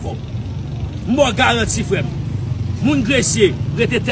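A man's voice speaking in two short stretches, about a second in and again near three seconds, over a steady low rumble of street traffic.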